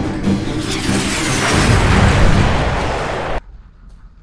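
Intro theme music ending in a loud swelling rush and boom, which cuts off suddenly about three and a half seconds in.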